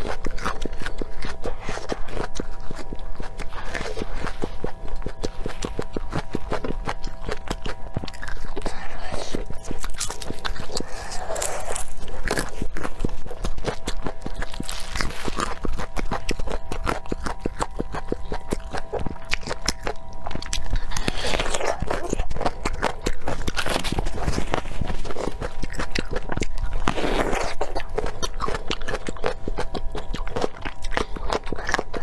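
Close-miked chewing and crunching of crisp raw vegetables, including fresh red chili peppers, for mukbang eating sounds. Steady chewing with several louder crisp bites standing out about four times.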